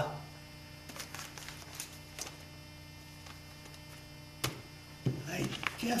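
Steady electrical mains hum in the recording, with a few faint clicks and one sharper click about four and a half seconds in. A man's voice comes in near the end.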